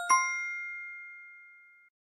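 A bell-like ding sound effect marking the correct quiz answer: a quick double strike, the second louder, ringing out with clear tones and fading away over about a second and a half.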